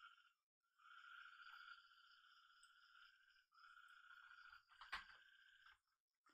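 Near silence: faint room noise, with one sharp click about five seconds in.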